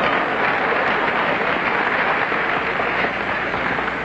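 Lecture-hall audience applauding after a joke, a steady clapping that starts to die down near the end.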